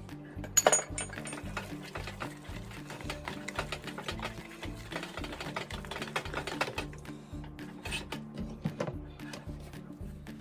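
Background music with a steady beat, over a wooden spoon stirring thick mashed potatoes in a pot, scraping and knocking against it. There is a sharp knock about half a second in.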